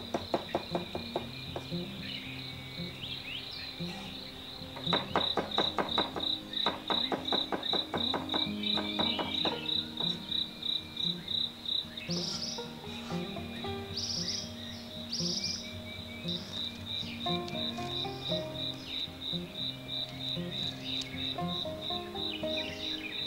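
Cleaver chopping cucumber into thin shreds on a wooden chopping block, in fast runs of strokes at the start and again from about five to nine seconds in. An insect's steady, pulsing high chirp runs underneath, with soft background music.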